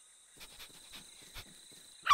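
Faint night-forest ambience with a steady high insect chirr, over which a cartoon puppy gives a few soft, short sniffs at the ground.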